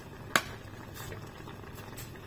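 Noodle broth simmering in a stainless steel pot, a steady low bubbling. A metal ladle clinks sharply once against the pot about a third of a second in, with a few fainter taps later.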